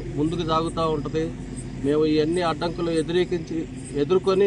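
A man speaking Telugu, with a steady low hum beneath the voice.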